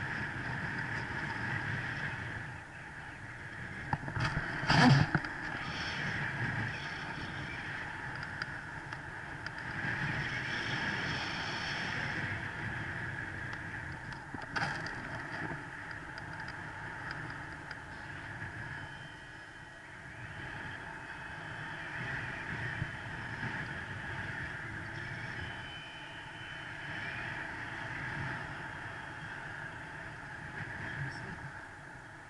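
Steady rush of airflow over a camera microphone in flight, with a short cluster of loud knocks about four to five seconds in.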